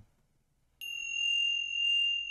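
A tuning fork ringing: a single high, pure tone that starts suddenly about a second in and holds steady, with a fainter higher overtone above it.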